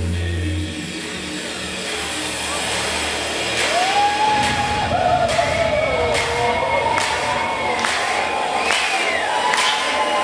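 Trance music over a club sound system. The bass drops out about a second in for a breakdown. A crowd cheers over it, with wavering, gliding whistle-like tones and sharp hits building from about the middle.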